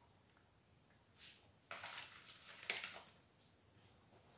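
Paper sheets from between cheese slices rustling and crinkling as the slices are peeled off and laid on bread, a brief rustle followed by about a second of crinkling with one sharper crackle near its end.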